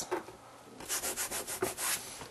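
Chalk scratching on a chalkboard in a quick run of short strokes, starting about a second in.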